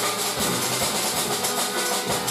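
Jazz piano trio playing: grand piano notes over upright bass, with a Yamaha drum kit's cymbals giving a steady shimmering wash and light drum hits.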